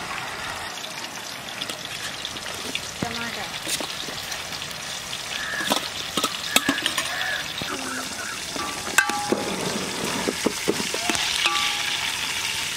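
A steel ladle scraping and clinking against a steel plate as chopped vegetables are pushed off it into an aluminium pot, then stirred in, with sharp metallic clicks over a steady hiss.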